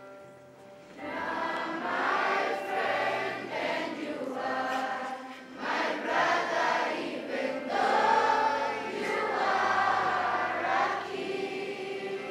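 A group of schoolchildren singing a hymn together as a choir, without accompaniment. The singing is softer for the first second, then swells and carries on in phrases.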